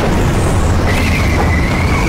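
Loud roar of air rushing past a parachutist in free fall, with a thin, steady high whistle joining about a second in.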